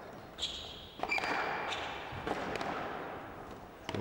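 Squash rally: a few sharp knocks of racket and ball off the court walls, roughly a second apart, with short high squeaks from the players' shoes on the court floor.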